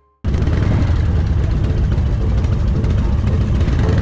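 V-twin motorcycle engine running steadily, heard close up from the rider's seat; it cuts in suddenly about a quarter of a second in, after a brief silence.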